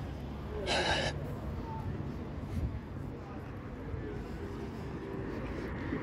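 Town-street background: a steady low rumble of distant traffic and passers-by, with a short breathy hiss about a second in.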